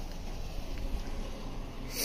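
Low, steady rumbling handling noise on a hand-held phone microphone while a small ratchet adapter is picked up, with a brief hiss near the end.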